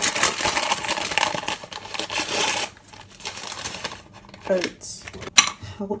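Dry rolled oats poured into a ceramic bowl: a dense rattling rustle lasting about two and a half seconds, then quieter, with a sharp click near the end.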